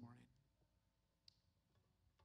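A man's voice trails off in the first moment, then near silence with a few faint clicks.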